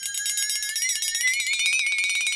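Edited-in transition sound effect: a bright, high, jingling ring with a fast even flutter through it, its pitch drifting slightly up and holding.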